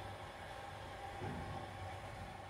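Faint background noise: a steady low hum under a soft hiss, with no distinct events.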